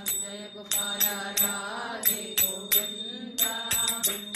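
Devotional chant music: voices chanting a repeated melody over a steady drone, with rhythmic metallic percussion strikes that leave a high ringing tone.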